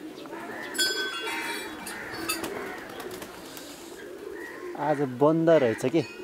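Pigeons cooing, with a short metallic ring about a second in that fades within half a second. A person's voice near the end is the loudest sound.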